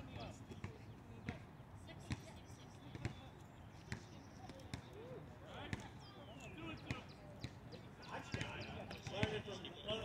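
Distant voices of softball players calling out across the field, loudest near the end, with scattered short knocks throughout.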